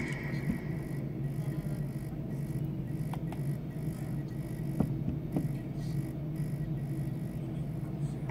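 Steady low hum of room background with a few light clicks and taps scattered through it.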